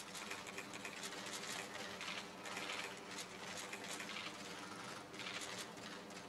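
Many camera shutters clicking in rapid, irregular bursts while a document is being signed, over a faint steady room hum.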